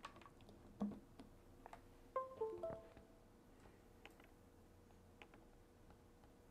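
A short electronic chime: a quick run of four pitched tones stepping down in pitch, about two seconds in, faint. It comes after a soft knock and is followed by a few light clicks of handling.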